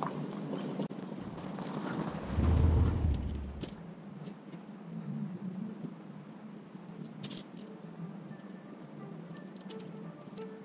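Outdoor shoreline ambience with a low rumble that swells about two and a half seconds in and dies away within a second or so. Near the end, soft background music with mallet-percussion notes, like a marimba, fades in.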